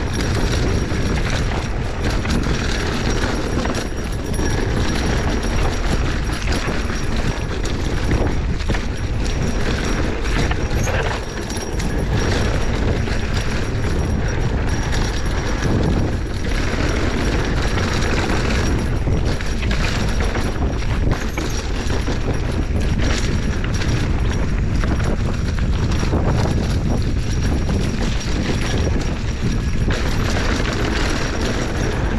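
Mountain bike riding fast down a dirt singletrack: a steady wind rumble on the microphone, with tyre noise and a running clatter of knocks and rattles from the bike over rough ground.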